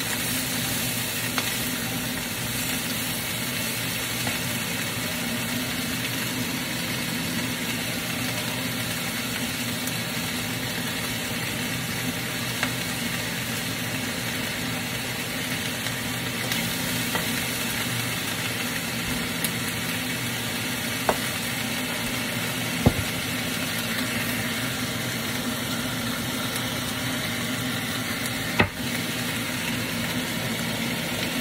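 Fiddleheads frying in a wok with a steady sizzle, stirred with a wooden spatula, with a few sharp knocks of the spatula against the pan.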